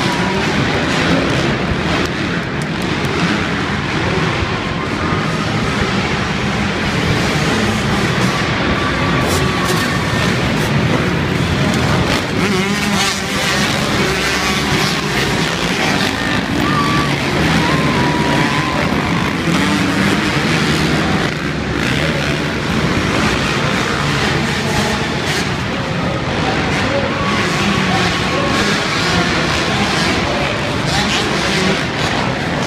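A pack of motocross bikes racing around an indoor arenacross dirt track, their engines revving together without a break, heard inside the arena.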